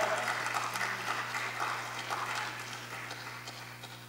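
Congregation applauding, the clapping fading away over about four seconds.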